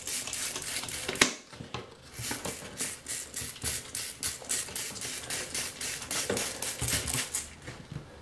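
Plastic trigger spray bottle squirting onto a moldy plywood subfloor in a rapid string of short hissing sprays, a few a second, after a sharp click about a second in.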